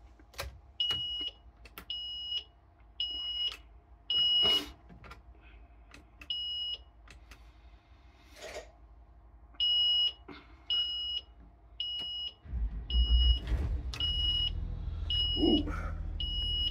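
Bus cab warning buzzer beeping about once a second in runs, sounding while the air pressure in the tanks is very low. About twelve and a half seconds in, a steady low rumble starts as the bus's engine starts and idles.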